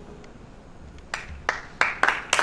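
Hand-clapping starting up in a hall: after a quiet second, three single sharp claps about a third of a second apart, the start of audience applause.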